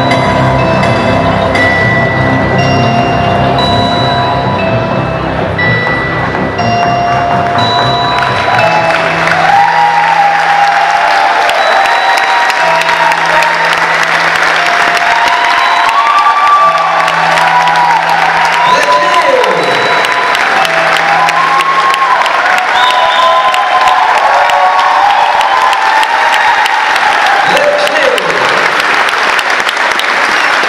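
Runway music with a bass line fades out about eight seconds in, giving way to an audience applauding and cheering, with voices calling out over the clapping.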